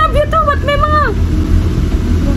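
A high-pitched voice sliding up and down in a sing-song way with no clear words, stopping about a second in, over a steady low hum.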